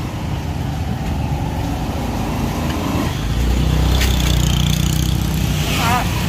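Motor vehicle engine running amid street traffic, growing louder about three seconds in and then holding a steady hum.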